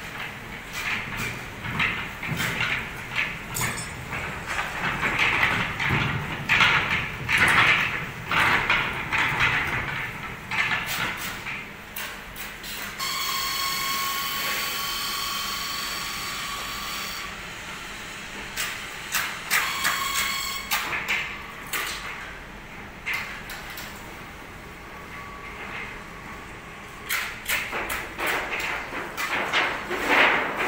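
Irregular metal clanks and scrapes from a foundry ladle trolley being pushed on steel floor rails. About halfway through, a steady high whine runs for around four seconds and comes back briefly a few seconds later.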